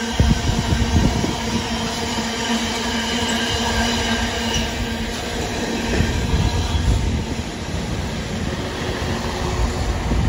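Container freight train's wagons rolling past, a continuous rumble of wheels on rail with heavier thumps of wheelsets over the track about a second in and again around six to seven seconds. A thin steady whine from the wheels sits over it and fades out about halfway.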